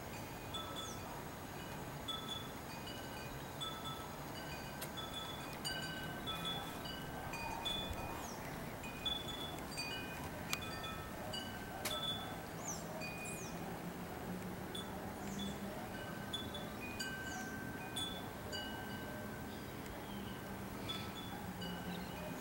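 Wind chime ringing irregularly, its metal tubes sounding a few fixed notes at random over and over. A few short high chirps come in about halfway through.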